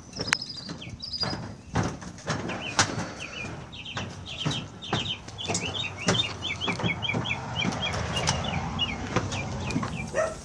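A bird singing a rapid string of short repeated chirps, about four or five a second, over scattered knocks and thumps from footsteps and handling.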